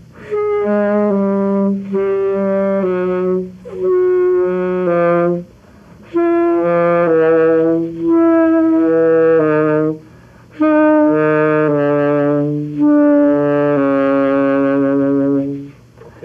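Saxophone playing a melodic line of held notes in four phrases, with short breaths between them about four, six and ten seconds in.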